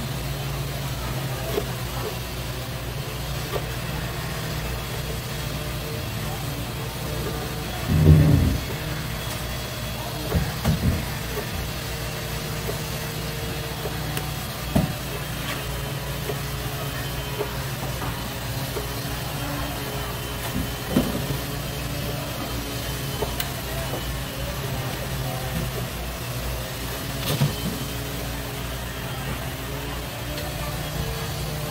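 A steady low machine hum, with a handful of short knocks of a knife and hands on a wooden cutting board as flatfish fillet is sliced into sashimi; the loudest knock comes about eight seconds in.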